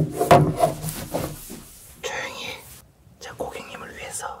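A voice close to the microphone, speaking and then whispering.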